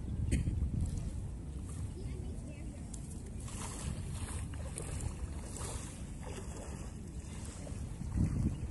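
A steady low rumble with wind buffeting the microphone, and a few brief hissy swishes about halfway through.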